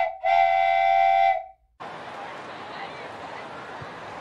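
A whistle sounds twice at one steady pitch, a short blast and then a longer one of about a second. It cuts off shortly after, and the even murmur of a ballpark crowd begins.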